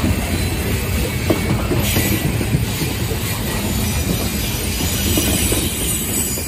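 Covered hopper cars of a freight grain train rolling past at close range: a steady rumble of steel wheels on the rail with small knocks and clatter from the wheels and couplers.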